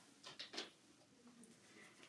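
Near silence, with a faint brief rustle of cardstock being handled about half a second in.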